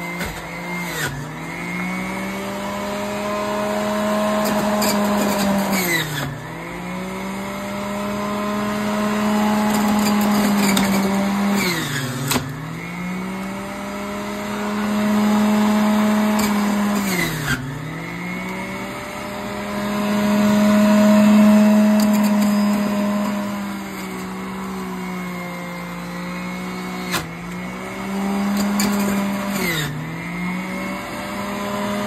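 Centrifugal juicer's motor running at high speed and shredding fruit. Its pitch sags and recovers about every five to six seconds as the fruit is pressed down onto the spinning cutting disc, loading the motor.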